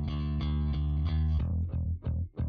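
Clean bass guitar stem from a hard rock cue playing back with very little processing. It holds a steady line of low notes that turn short and separated about three-quarters of the way in.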